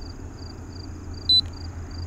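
Insects chirping in a steady pulsing rhythm over a low, even rumble. About a second and a half in there is one short, sharp click with a brief high beep.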